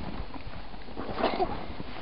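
Footsteps in snow, a soft irregular step every fraction of a second, with a short vocal sound about a second in.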